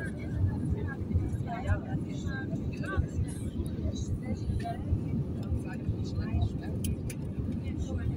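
Airliner cabin noise at a window seat over the wing: a steady low rumble of the jet engines and airflow, with passengers' voices in the background.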